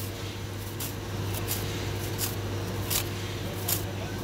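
A Yellow Jacket fin comb scraping in short, irregular strokes, about two a second, across a chiller condenser coil's fins to straighten the bent ones, over a steady low hum.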